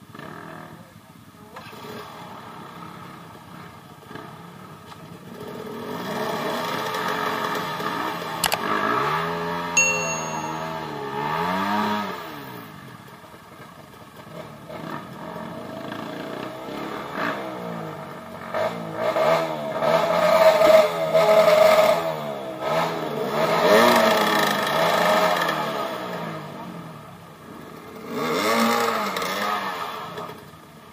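Dirt bike engine revved hard in several long bursts, its pitch rising and falling, as the bike struggles to climb a steep rutted dirt track with a person pushing it.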